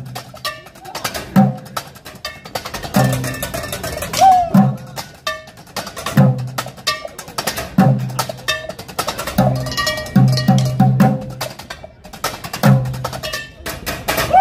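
Kitchen percussion played on pots, pans and stoves over a music track: sharp metallic, cowbell-like clanks in a fast rhythm, with a deep drum hit about every one and a half seconds. A short swooping tone sounds about four and a half seconds in.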